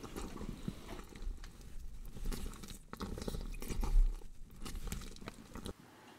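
Camera handling noise: a low rumble with irregular small knocks and scrapes as a handheld camera is moved about. It cuts off suddenly near the end.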